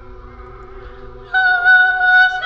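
A choir holding a soft sustained chord; about a second and a half in, a much louder high part enters on a held note with a slight waver.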